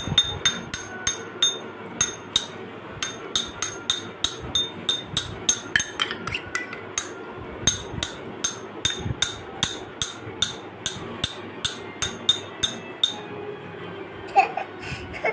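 Metal spoon repeatedly tapping a small stainless steel cup: quick clinks with a bright metallic ring, about three a second.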